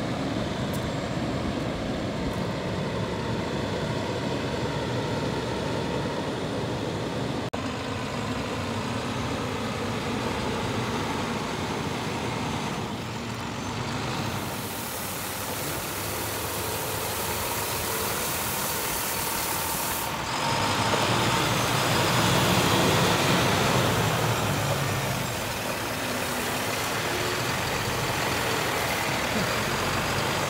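International 7400 6x6 water truck's diesel engine running as the truck drives up. The hiss of water spraying onto gravel starts about halfway through and grows louder for a few seconds as the truck comes close.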